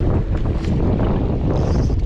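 Strong gusty wind, about 20 km/h, buffeting the camera's microphone: a loud, steady, low rumbling roar.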